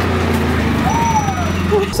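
Six-wheeled utility vehicle's engine running steadily under way, with a high voice calling out over it, rising and then falling, about a second in.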